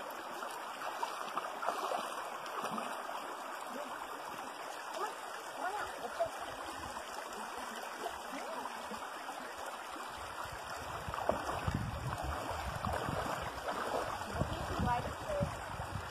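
Shallow creek water running steadily over a gravel bed. A low, uneven rumble joins the flow from about eleven seconds in.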